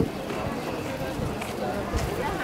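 Outdoor crowd ambience: indistinct chatter of passers-by, with footsteps on pavement.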